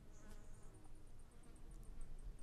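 Faint insect call: a quick, even run of thin, high ticks, about seven or eight a second, over quiet outdoor background.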